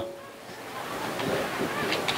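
Wind noise on an outdoor microphone: a steady rushing hiss that swells slightly about half a second in, with faint voices behind it.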